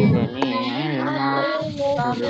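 A song with children's voices singing held, wavering notes over a musical accompaniment, heard through a video call.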